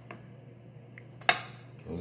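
A metal spoon clinking against a skillet while scooping wet chicken enchilada filling, with one sharp clink a little over a second in.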